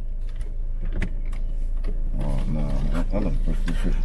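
Steady low hum of a car heard inside the cabin, slowly growing louder, with a few light clicks in the first second and a half. In the second half a person makes a drawn-out, wavering voice sound.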